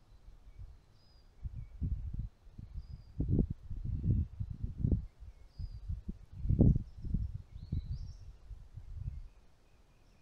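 Wind buffeting the microphone in irregular low gusts, loudest about six and a half seconds in, with faint, high, short bird chirps now and then.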